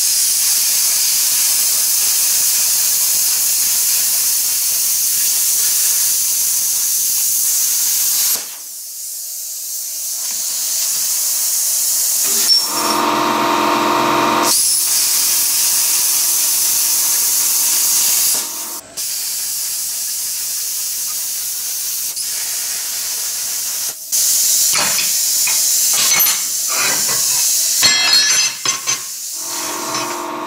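Plasma cutter cutting through steel plate: a loud, steady high hiss in several long passes, the first lasting about eight seconds, with quieter pauses between cuts. One pause holds a brief lower hum, and short crackles come near the end.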